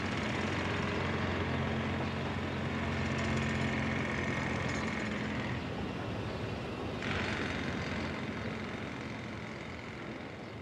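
Steady street noise dominated by a running engine, with a constant low hum, starting abruptly.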